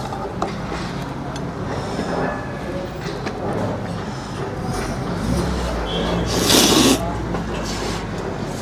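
A person slurping noodles: one loud, half-second slurp about six and a half seconds in, over a steady low hum of restaurant background.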